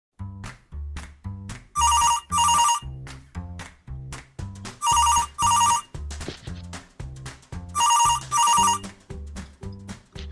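Telephone ringing: three double rings about three seconds apart, over background music with a steady beat.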